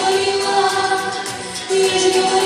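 Group of voices singing a song to musical accompaniment, holding long notes, with a new phrase starting near the end.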